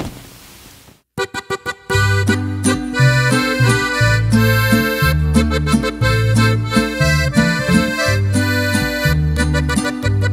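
Norteño trio of button-and-piano accordion, guitar and large bass guitar playing an instrumental intro in G major. A few short chords sound about a second in, then the full band comes in about two seconds in. The accordion carries the melody over strummed chords and a stepping bass line.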